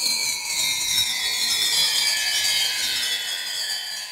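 Transition sound effect between chapters of a narrated story: several high tones gliding slowly downward together with a grainy hiss, fading toward the end.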